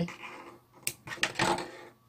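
Metal scissors set down on a hard tabletop: a sharp click a little under a second in, then a short cluster of clacks.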